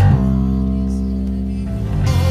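Electric bass guitar playing the song's chord progression in long, held notes, moving to a new note just after the start.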